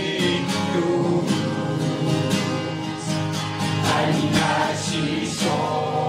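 A small mixed group of men's and women's voices singing a song together, led by a man's voice, over a strummed acoustic guitar.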